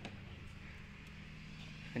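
Quiet background with a steady low hum and a faint click at the very start.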